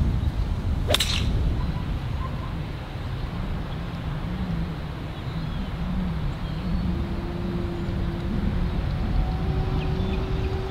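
A golf 7-iron strikes the ball about a second in: a single sharp crack. After it comes a steady low wind rumble on the microphone, and a faint steady hum joins near the end.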